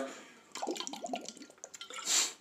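A person drinking water from a bottle: faint gulps and small wet liquid sounds at the mouth of the bottle.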